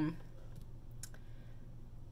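Two faint clicks about a second in from tarot cards being handled on a wooden table, over a low steady hum of room tone.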